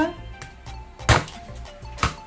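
The flat of a steel cleaver strikes once onto a piece of crispy fried chicken on a bamboo cutting board, a single sharp smack about a second in, smashing the chicken flat. Background music plays under it.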